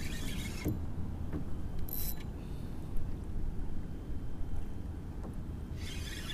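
Daiwa Capricorn spinning reel being cranked in short spells, a fine high whirr at the start and again near the end, over a steady low rumble of wind and water on the microphone.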